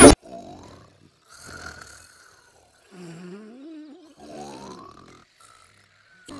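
A sleeping cartoon character snoring softly, with about five drawn-out snores in a slow rhythm. Some of the snores have a wobbling or rising pitch.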